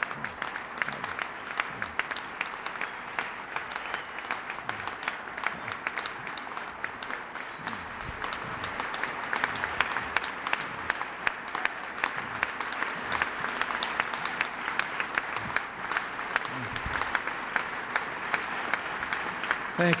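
Large audience applauding, with dense, continuous clapping that grows louder about eight seconds in.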